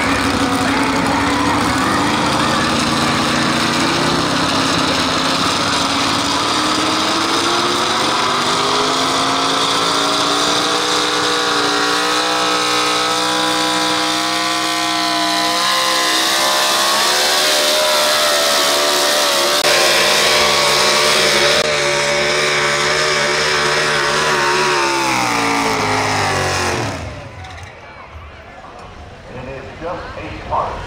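A pro stock 4x4 pickup's engine at full throttle pulling a weight-transfer sled. Its pitch climbs over the first several seconds, holds high, then falls, and the engine sound drops away suddenly near the end as the pull finishes.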